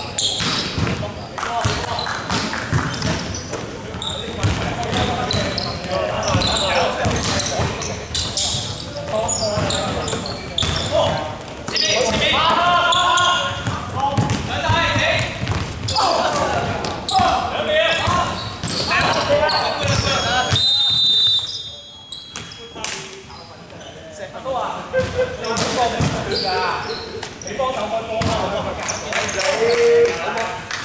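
Players' voices calling out during an indoor basketball game, with a basketball bouncing on the wooden court.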